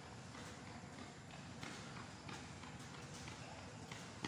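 Faint footsteps of a person jogging across a concrete court floor, a light irregular patter of steps.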